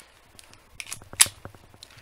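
Cheap spring-powered airsoft pistol, a Chinese Beretta 92 copy, being handled and cocked: a few light plastic clicks, the sharpest about a second in.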